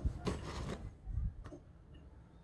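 Hands handling a Sig Sauer Romeo MSR red dot sight: low bumps and a rustle, then a single sharp click about one and a half seconds in.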